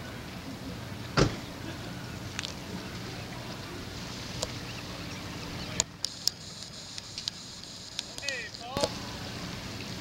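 Steady low hum of a boat's engine running, with one sharp knock about a second in and scattered clicks and taps later.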